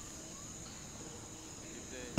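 Crickets chirring faintly and steadily in the background.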